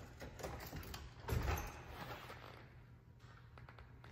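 Stryker Power-PRO XT powered ambulance cot lowering its litter on its battery-powered hydraulic legs: a steady mechanical run with a thump about a second and a half in, fading into light clicks near the end.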